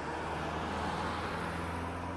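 A motor vehicle's steady low engine hum with road noise that swells and fades again, as of a vehicle passing.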